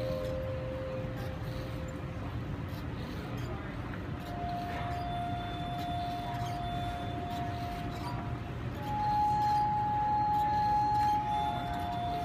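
Wine glasses of an automatic glass harp singing one sustained note at a time as keys are pressed. A lower note fades out at the start, and after a short gap a long held note begins. A higher, louder note takes over near nine seconds, then the earlier note returns near the end, all over a steady low hum.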